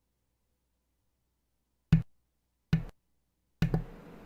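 Microphone being switched back on and handled after dead silence: two sharp thumps a little under a second apart, then a third knock near the end, after which the room sound stays on.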